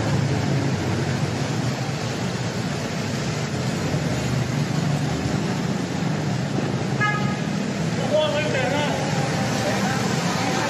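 Steady traffic noise from a busy road running alongside, with a short car horn toot about seven seconds in.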